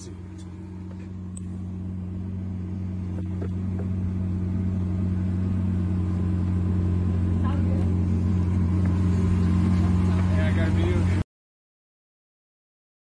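Lamborghini Aventador Ultimae's 6.5-litre V12 idling steadily, a low even hum that grows louder and then cuts off suddenly near the end.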